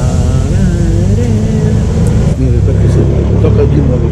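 A steady low rumble with people talking over it, the voices clearest in the first second and a half.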